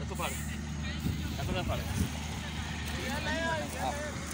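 Voices talking in Punjabi at a distance, over a steady low hum.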